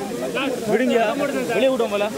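Raised men's voices, excited and talking over one another, over the steady hiss of a waterfall.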